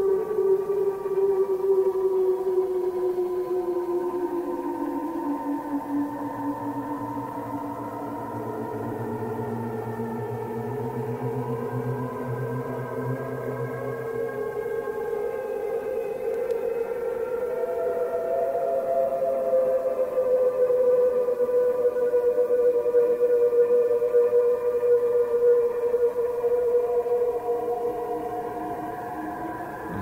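Drone music: several sustained tones layered over one another, slowly sliding in pitch, with a low hum coming in about six seconds in and dropping out around fifteen seconds. It swells in the second half and eases off near the end.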